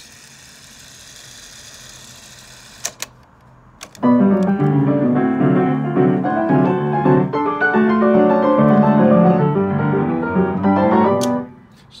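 A cassette winding in a Marantz Pianocorder player system with a faint whir, then a few mechanical clicks about three to four seconds in. The Sherman Clay grand piano then plays itself from the tape for about seven seconds, and stops with a click near the end.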